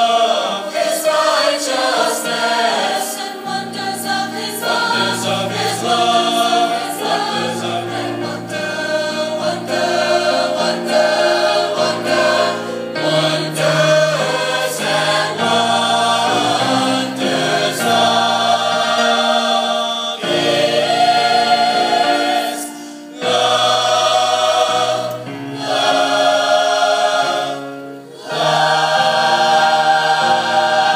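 A choir singing in parts, moving through held notes, with short breaks for breath about two-thirds of the way through and near the end.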